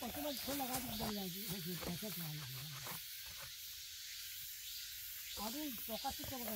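A man's voice, drawn out and slowly falling in pitch for about three seconds, then a pause and more voice near the end, over a steady high hiss.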